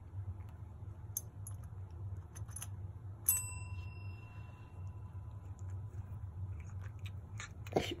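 A chrome desk service bell rung once by a kitten about three seconds in: a single bright ding that rings on and fades away over several seconds. A few faint taps come before it.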